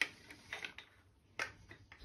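A handful of short, sharp clicks and taps, the loudest right at the start: screws and a 3D-printed plastic holding jig knocking against the metal flange of a milling machine as they are seated in its T-slot.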